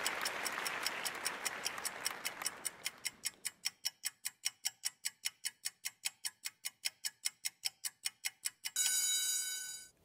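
Game-show countdown clock sound effect ticking about four times a second, with applause fading out under it over the first few seconds. Near the end the ticking stops and a buzzer tone sounds for about a second as time runs out.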